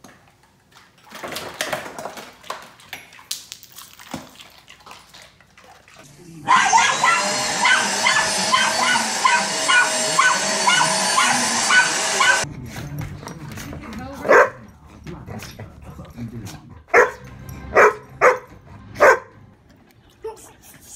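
An upright vacuum cleaner running with a steady high whine while a puppy yaps at it over and over; the vacuum cuts off suddenly. A few seconds later come five short, separate barks.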